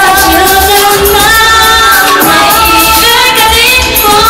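Loud K-pop song: female singing over a backing track with a pulsing bass beat.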